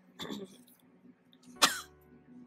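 A person coughing twice: a softer cough just after the start and a sharper, much louder one near the end.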